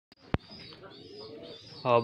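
Chicks cheeping faintly and steadily, with a sharp click about a third of a second in; a man's voice begins near the end.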